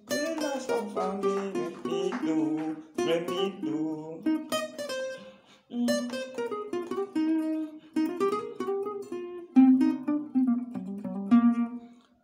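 Acoustic guitar playing a single-note highlife solo line: picked melodic phrases of separate plucked notes, with a brief pause about halfway through.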